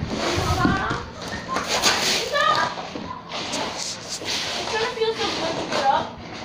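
Indistinct children's voices and chatter, with the rustle of shelled corn kernels shifting underneath.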